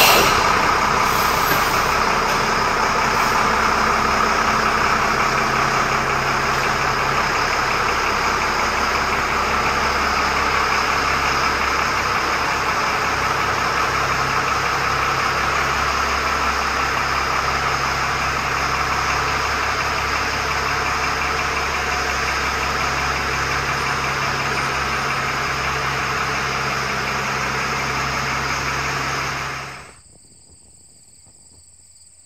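Diesel engine of a Stewart & Stevenson LMTV military truck running steadily as the truck moves slowly forward. The sound cuts off suddenly near the end.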